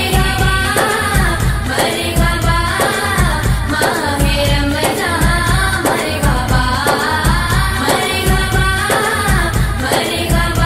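A naat, an Islamic devotional song, sung by a solo voice with long melismatic phrases over a steady low drum beat.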